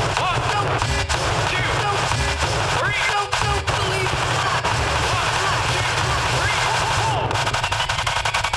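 DJ scratching records on two turntables over a heavy bass beat: short pitched scratches sweep up and down, chopped by the crossfader. Near the end comes a fast burst of rapid stuttering cuts.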